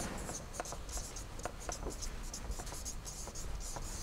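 Felt-tip marker writing on a whiteboard: an irregular run of short, high squeaks and scratches as words are written out by hand.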